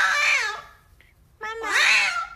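Poodle giving high, wavering whine-howls: one call fades out about half a second in, and another rises from about a second and a half in.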